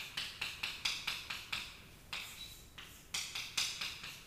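Chalk writing on a chalkboard: quick, sharp tapping and scratching strokes, about five a second, in three short runs with brief pauses between.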